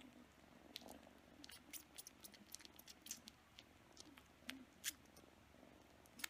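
Kitten suckling and chewing on a person's finger: faint, irregular wet sucking clicks, one louder near five seconds in. It is comfort-suckling, a self-soothing habit after being frightened by thunder.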